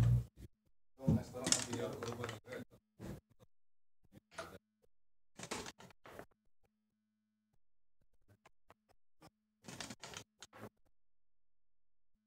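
Backgammon play at the board: a loud knock at the start, then a couple of seconds of dice and checkers clattering and clicking, and a few shorter clicks later, with quiet voices in the room.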